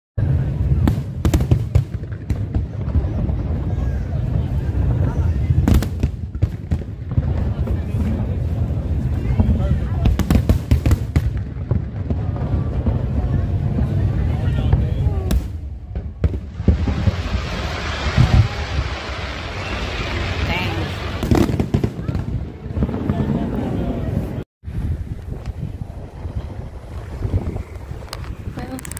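Aerial fireworks display: repeated sharp bangs and booms over a constant low rumble, with voices mixed in. A denser stretch comes about two-thirds through.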